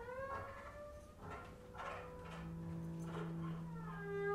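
Improvising orchestra of acoustic instruments playing quietly: wavering, gliding pitches slide down at first, then several long held tones enter from about one and a half seconds in, with a few scattered scraping strokes.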